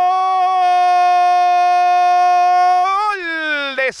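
A football commentator's long held "gooool" goal call, one loud steady high note that slides down in pitch about three seconds in before he goes back to talking.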